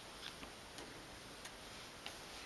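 Quiet room tone with a few faint, irregularly spaced small clicks.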